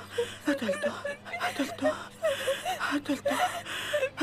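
Women crying, with short broken sobs and gasping breaths.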